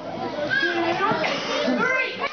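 Background chatter of an audience: many overlapping adult and children's voices, none clear enough to make out.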